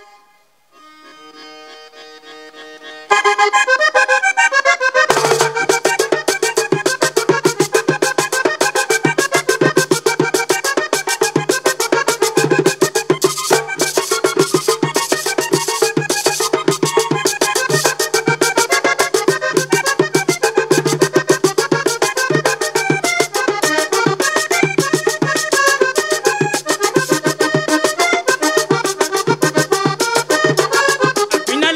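Vallenato paseo played on a diatonic button accordion. It opens with a soft accordion introduction that grows louder about three seconds in, and about five seconds in the caja drum and guacharaca scraper join with a steady, even beat under the accordion melody and bass.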